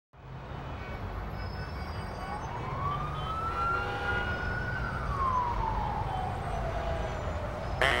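An emergency-vehicle siren gives one slow wail. It rises for about two seconds, holds, then falls away over the next three, above a low steady rumble of street noise. A voice hums 'mm' at the very end.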